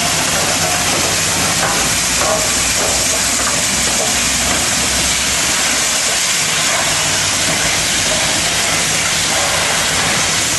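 Union Pacific 844, a 4-8-4 Northern steam locomotive, hissing steam as it rolls past. The hiss is steady and even, with no distinct exhaust beat.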